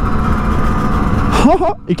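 Simson two-stroke moped engine running steadily while the moped pulls along the road, growing slightly louder over the first second and a half. A short vocal sound cuts in near the end.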